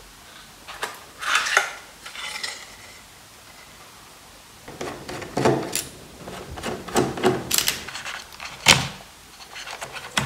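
Hands and a screwdriver working inside an opened iMac G5, around the hard drive and its mounting. Scattered clicks, taps and short scrapes of metal and plastic parts come in a brief cluster about a second in, then many more in the second half, with a sharp click near the end.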